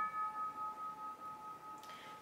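Doorbell chime dying away after being rung: a held ringing tone that wavers gently as it slowly fades. It signals a visitor at the door.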